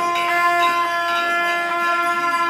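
Traditional music for a masked dance: a wind instrument holds one steady note with a stack of overtones, and the drums drop out.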